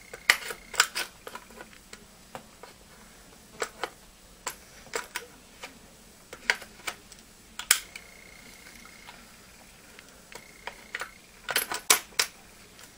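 Irregular sharp metal clicks and taps as a Mossberg 500 shotgun's trigger group is worked into the receiver during reassembly, with a few louder clicks scattered through.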